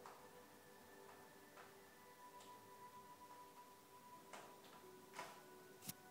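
Near silence: faint, sustained tones of quiet meditation music, with a handful of soft clicks, the sharpest near the end.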